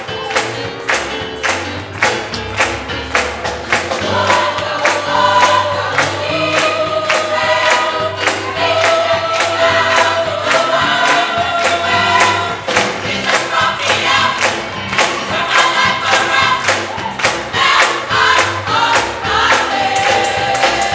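Gospel choir singing over a steady beat of hand claps; the voices come in about four seconds in.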